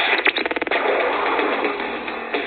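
Show-opening sound effect on a radio broadcast, heard through the radio's speaker and recorded on a phone with a narrow, muffled sound. A quick rapid clatter comes about a quarter second in, followed by a steady rushing noise with no voice.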